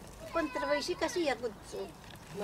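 A person's voice talking, its pitch rising and falling.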